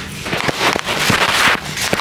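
Close, crackling handling noise with many small clicks and rubs, the sound of hands fitting and adjusting a small camera-mounted microphone right at the mic. It is loudest in the first second and a half, then eases off.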